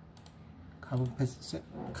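A few quick clicks on a computer keyboard in the first moments, then a man's voice.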